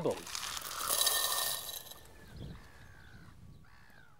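Small rounded beach pebbles poured into a glass jar onto a layer of sand: a rattling clatter of stones against the glass and each other, lasting about a second and a half. A soft thump follows about halfway through.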